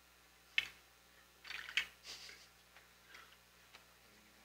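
Scattered light clicks and crinkling rustles of handled plastic, as prefilled communion cups are taken from the passing plates. A sharp click comes about half a second in, then a burst of crinkling near the middle and a few small ticks after it.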